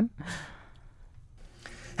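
A short breathy sigh from a person, a quarter to half a second in, at the tail of laughter. Faint hiss follows.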